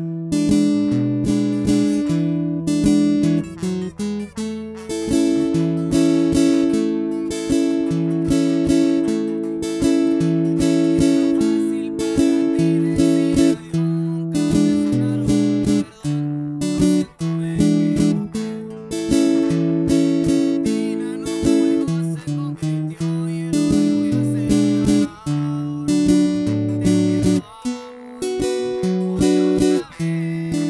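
Acoustic guitar played with a pick in a steady rhythm: a bass note on the chord's root, then up and down strums, then an alternate bass note and two down strums, moving through the chords A, E7, D and Bm.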